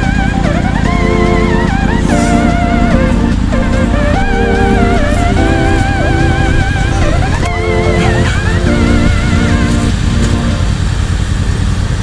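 Adventure motorcycle engines running at a steady low rumble, mixed with background music carrying a held, wavering melody over sustained chords.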